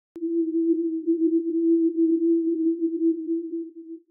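A click, then a single steady low electronic tone held with a slightly wavering loudness, dropping away right at the end.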